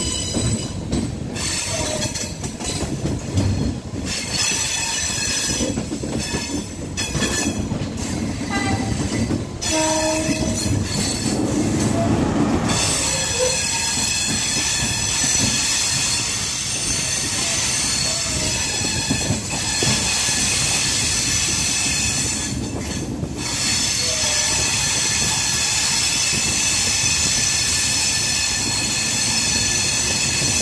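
Sri Lanka Railways Class S11 express train running, heard from the carriage side. Its wheels knock irregularly over the rails and points for the first ten seconds or so. A horn sounds for about two seconds around ten seconds in, and then a steady high-pitched wheel squeal runs on to the end.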